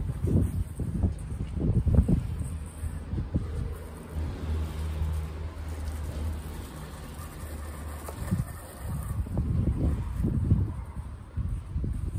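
Wind buffeting the microphone in irregular low rumbles, with a steady low hum for a few seconds in the middle.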